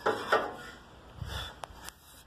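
Steel chainsaw guide bars handled against a wooden stump: two short scrapes near the start, then a dull thud and two light clicks near the end.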